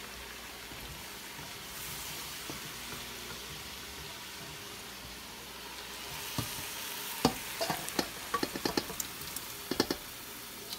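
Steady sizzling hiss of gravy heating in a stainless steel pot on the stove. From about six seconds in, a wooden spoon stirs and knocks against the pot. Near the end there is a quick run of clicks and knocks as a second metal pot of sausage and vegetables is tipped over the rim.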